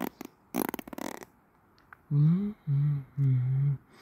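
A man humming three short, low, steady notes in the second half. Earlier, about half a second in, comes a brief rattling burst.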